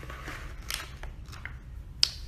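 A few short plastic crackles and clicks from a clear plastic food container being handled, over a low steady hum.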